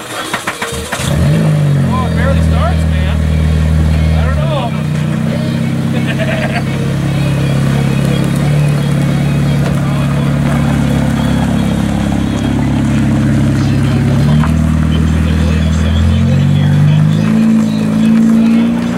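Honda Civic race car's engine starting about a second in after a brief crank, then idling steadily with a few shifts in pitch, and rising as the car pulls away near the end.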